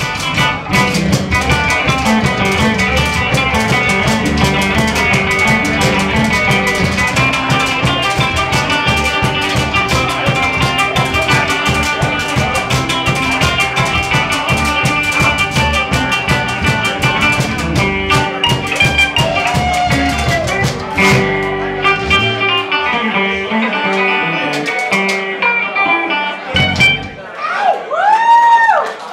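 A live band playing a song on guitars with a drum kit. About 22 seconds in the drums and bass drop away, leaving mostly guitar, with a short break just before the end.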